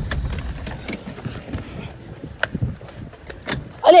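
Low rumble of a car engine close by, fading out over the first two seconds, under scattered clicks and rubbing from a handheld phone being carried.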